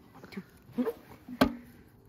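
A single sharp wooden knock about halfway through as the hinged wooden flap of a scent-quiz box is swung open.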